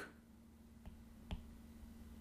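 Faint clicks of a stylus tapping on a tablet screen during handwriting: a light tick a little under a second in, then a sharper click, over a faint steady low hum.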